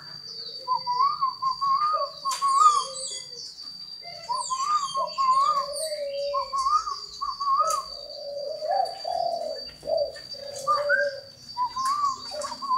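Spotted doves cooing: several birds give repeated short coo phrases that overlap one another. Small birds chirp high above them, and a steady high tone runs underneath.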